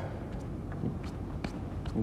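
Hero S8 electric scooter's rear wheel spinning freely past its freshly adjusted disc brake: a faint low whir with a few light clicks, and no rubbing of the disc against the pads.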